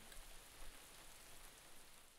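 Near silence: a faint, even hiss that fades away near the end.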